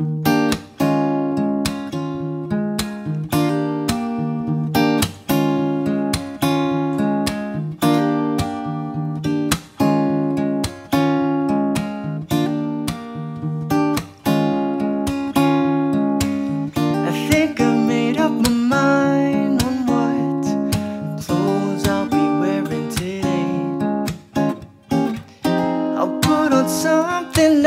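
Solo steel-string acoustic guitar playing a song's instrumental intro: regular strummed and picked chords, with a brief drop between phrases about every four seconds.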